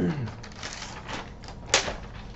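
Sheets of paper being handled and swept aside, rustling in a few short bursts, with one sharp crisp snap of the paper late on.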